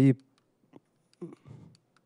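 A few faint clicks with light handling rustle, as a presenter presses a slide remote and the slide fails to advance.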